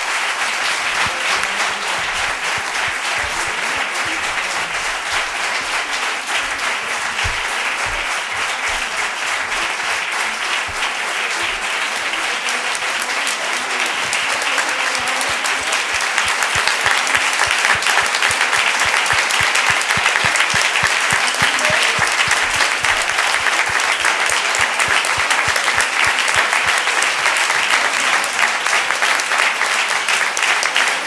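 Audience applause, many people clapping continuously, growing louder about halfway through.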